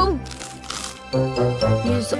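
Crisp crunching of a potato chip being bitten and chewed, in the first second, over background music.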